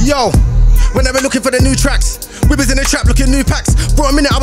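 Grime instrumental with heavy bass hits, a falling pitch sweep right at the start, then an MC rapping over the beat from about a second in.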